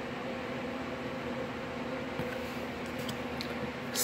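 Steady low mechanical hum in a small room, a running household appliance such as a fan or air conditioner, with a few faint ticks in the second half.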